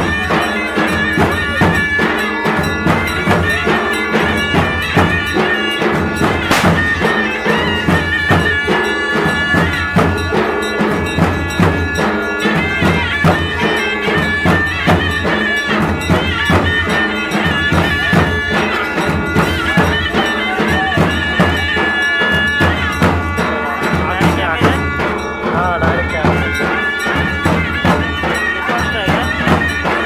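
Traditional folk music: a shrill double-reed pipe, such as the sanai played for a Konkan palkhi dance, holding a droning melody over a steady, regular drumbeat.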